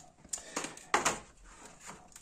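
About five short, dry clicks and taps as seeds are shaken out of a dried cayenne chili pod onto a wooden board and the board is handled. The loudest tap comes about a second in.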